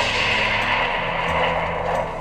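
Stock explosion sound effect played back from the timeline: it starts suddenly and goes on as a steady rushing noise.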